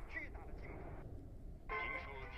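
Faint, thin-sounding broadcast audio received by a crystal radio with a crystal detector. A voice is heard briefly, then a short dip, and music comes in a little after halfway.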